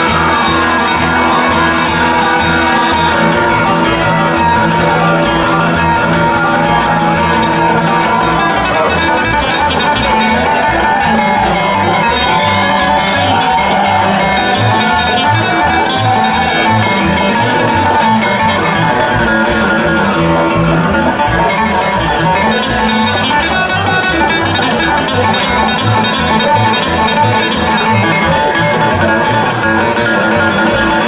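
Bluegrass band playing an instrumental break on banjo, acoustic guitar and upright bass, with the bass plucking a steady beat.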